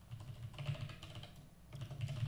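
Typing on a computer keyboard: quick runs of keystrokes with a short pause about three-quarters of the way through.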